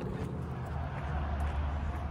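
Steady outdoor background noise with a low rumble and a light hiss, no distinct events.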